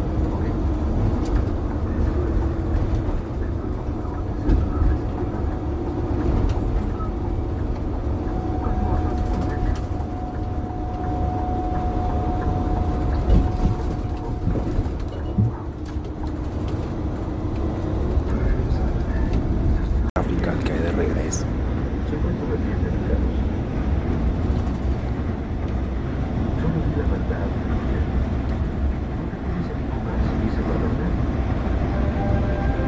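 Inside a moving intercity coach on the highway: the steady low rumble of the engine and tyres, with a faint steady whine for several seconds in the first half. The sound cuts out for an instant about two-thirds of the way through.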